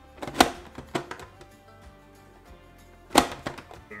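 Plastic press-down vegetable dicer snapping shut, its lid forcing green pepper through the blade grid: a sharp clack about half a second in, a couple of lighter knocks around a second, and another sharp clack a little after three seconds.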